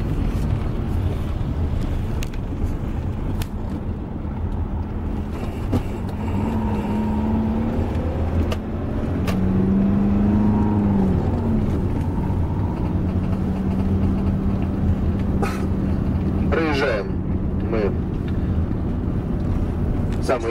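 Engine and road noise heard from inside a moving vehicle: a steady low rumble, with the engine note rising and falling in pitch between about six and eleven seconds in, then holding level.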